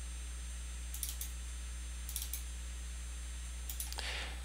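Faint computer mouse double-clicks, three pairs spaced about a second apart, over a steady low electrical hum.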